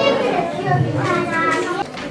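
A roomful of young children talking at once, several voices overlapping.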